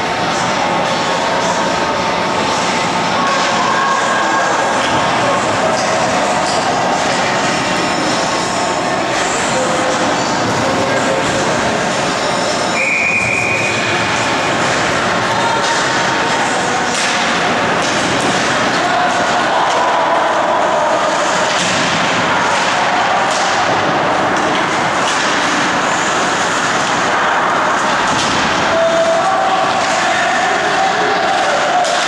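Indoor ice rink game sound: a steady wash of voices from players and spectators, with scattered sharp clacks of sticks and puck. A short, high whistle sounds once about 13 seconds in.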